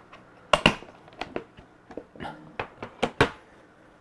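A string of sharp plastic clicks and knocks: a hard plastic instrument case for an Apogee PAR meter being unlatched and opened, and the meter handled inside it.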